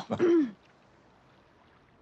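A woman's short closed-mouth 'mm' with a falling pitch, lasting about half a second.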